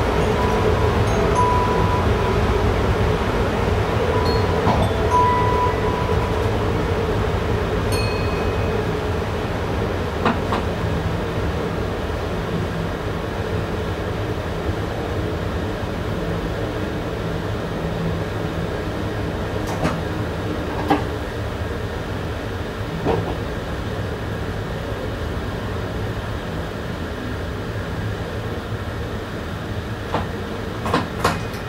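Passenger train running, heard from inside the driver's cab: a steady rumble and hum with a few sharp clicks along the way. The sound eases off slowly as the train slows on its approach to a station.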